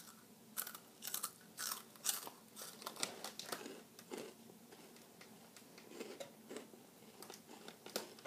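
Flamin' Hot Cheetos being bitten and chewed with the mouth closed: a run of crisp crunches, close together for the first few seconds, then fainter and further apart.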